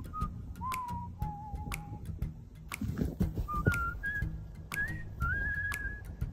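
Background music carrying a whistled melody, one clear tone that steps and slides from note to note and climbs higher in the second half, with light clicks scattered through it.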